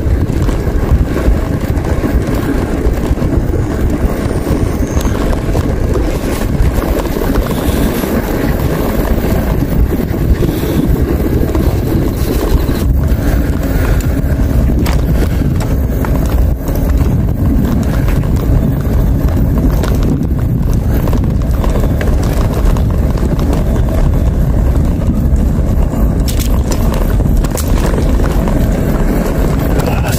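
Loud, steady wind rushing over the microphone of a moving bicycle, with rumble from its tyres on the paved path and a few short knocks from bumps.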